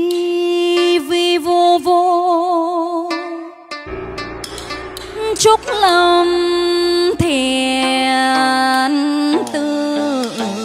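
A woman singing long held notes with vibrato into a microphone. A backing track's beat and bass come in about four seconds in.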